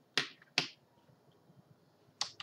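Two sharp clicks, about half a second apart.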